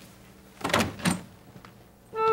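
A wooden door being opened: two sharp knocks about a second apart, then a faint click of the latch.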